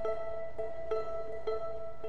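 Handbell choir playing: one note is struck again and again, about twice a second, over held, ringing bell tones.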